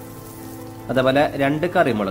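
Soft steady background music. About a second in, a voice starts speaking over it, with faint sizzling of hot oil underneath.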